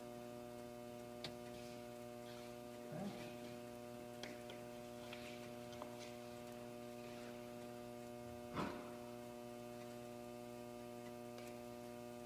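Steady electrical mains hum with evenly spaced overtones, with a few faint clicks and a short, louder knock about eight and a half seconds in.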